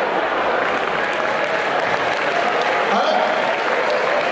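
Audience applauding steadily, with voices mixed into the crowd noise.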